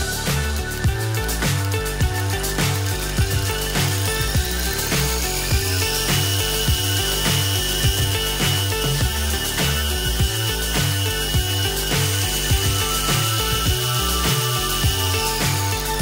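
Small 1503 2750kv brushless motor driving a plastic reduction gearbox, whining as it spins up a few seconds in, holding a steady high pitch, then winding down shortly before the end. Background music with a steady beat plays throughout.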